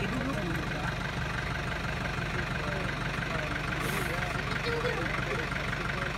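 A vehicle's engine idling steadily with an even low throb.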